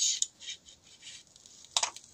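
Protective plastic film being peeled off a smartphone screen: a high, hissing crackle as the adhesive lets go, ending about a quarter second in, followed by a few faint rustles and a short sharper sound near the end.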